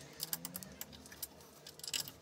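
Faint, irregular small metallic clicks and ticks of a hex key working the machine screws in a 3D-printed plastic gantry plate.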